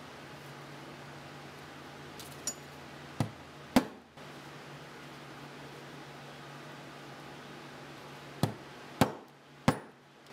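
Mallet strikes on a four-prong steel stitching chisel, punching stitch holes through a vegetable-tanned leather belt loop. Sharp knocks in two groups: a light tap and two strikes about 3 to 4 seconds in, then three strikes about half a second apart near the end.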